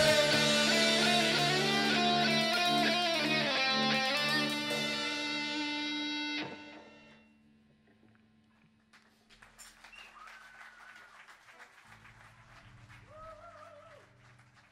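Amplified electric guitars and bass holding a last sustained chord that slowly fades and then cuts off abruptly about six and a half seconds in. Faint, indistinct sound follows near the end.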